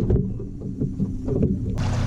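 Scattered low knocks and bumps in a fishing boat, then, close to the end, a sudden switch to the boat under way: a steady low motor hum with a rush of wind and water.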